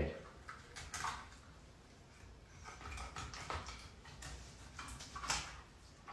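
A few faint, brief scrapes of a kitchen knife cutting the fillet away from a sea bass along its backbone.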